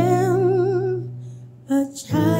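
A woman's voice holding a wordless note with vibrato over sustained low accompaniment, the worship song's closing section. It fades away past the middle, with a short note just before the end.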